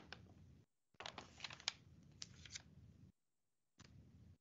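Faint computer keyboard typing and clicking picked up over a video-call microphone. The sound cuts in and out abruptly: a stretch that ends about half a second in, a longer one from about one to three seconds in, and a short burst near the end.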